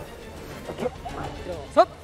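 Short voiced calls counting off the start of a ssireum bout, ending in a loud sharp shout of "three" near the end, over a faint music bed.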